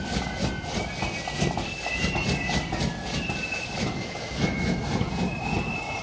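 Distant marching flute band playing: faint high flute notes stepping from pitch to pitch over drum beats and a low street rumble.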